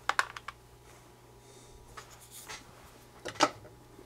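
A few small clicks, taps and scrapes of parts and tools being handled on a workbench, over a faint steady low hum.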